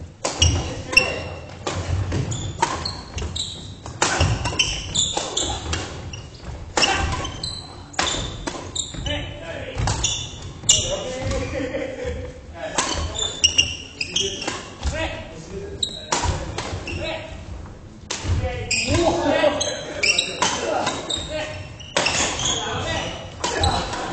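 Badminton play in a large gym hall: repeated sharp racket strikes on the shuttlecock and thuds of footsteps on the wooden court, with players' voices echoing in the hall.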